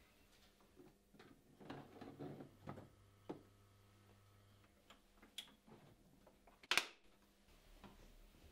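Faint clicks and handling of a hard plastic instrument case, then one sharp, louder knock a little under seven seconds in as the case lid is shut.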